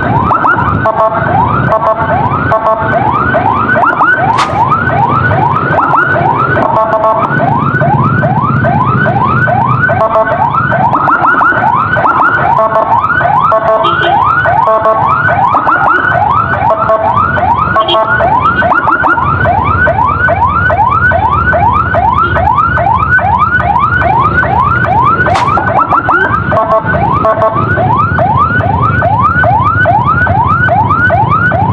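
Electronic emergency siren running in a fast yelp, about three rising sweeps a second, briefly switching a few times to a choppier warble, over the low rumble of engines in traffic.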